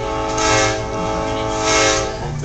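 A train's horn sounding one long, steady, chord-like blast, heard from inside the passenger car.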